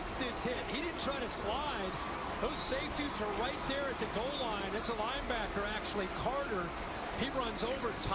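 Television broadcast of a college football game playing at low level: an announcer's voice over stadium crowd noise.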